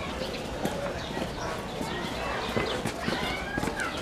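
Children's voices chattering and calling in the background of an outdoor play area, with footsteps on a hard path.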